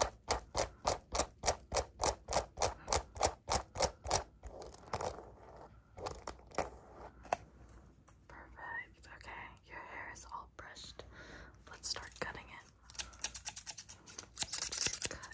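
Close-miked ASMR tapping: a quick, even run of sharp clicks, about three a second, for the first four seconds, followed by softer irregular scratching and whisper-like breathy mouth sounds.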